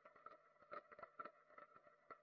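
Near silence, with faint rapid ticking throughout.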